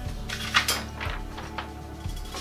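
A few light clicks and knocks of objects being handled and set down at a wooden cabinet, over a faint steady hum.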